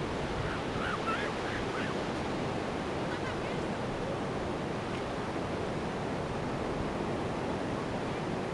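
Steady wind noise buffeting the microphone outdoors, with a few faint wavering whistles in the first two seconds and again about three seconds in.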